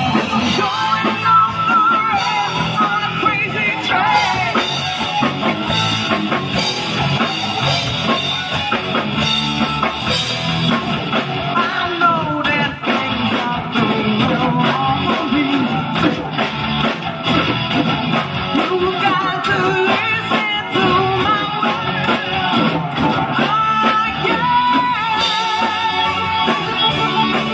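Live rock band playing at a steady, full level, with electric guitar over bass and drum kit.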